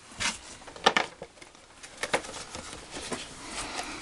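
Cardboard packaging rustling and knocking as a boxed scale-model truck is pulled out of a cardboard shipping box: a few short, irregular scrapes and clicks, the sharpest about a second in.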